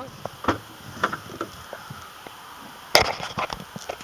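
Trunk of a 2012 Infiniti G37x sedan being opened by hand: a few light clicks, then a loud clunk about three seconds in as the lid releases and comes up.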